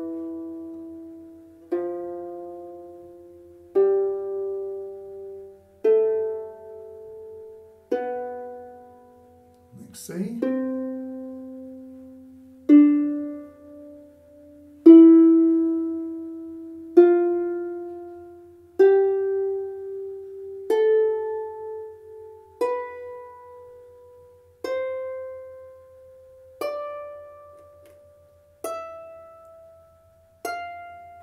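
Rees Harps Sharpsicle lever harp, its nylon strings plucked one at a time in an ascending scale, each note left to ring and fade before the next, about one every two seconds. There is a short click about ten seconds in.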